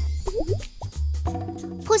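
Light background music with a repeating low bass line, with a few short sliding-pitch cartoon sound-effect blips in the first second. A cartoon character's voice begins just at the end.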